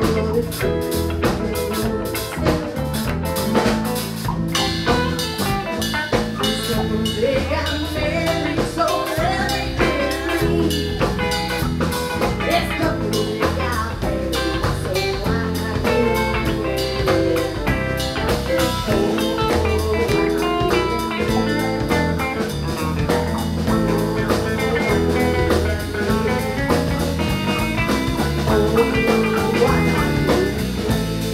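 Live rock band playing: electric guitar over bass and a drum kit, continuous and loud.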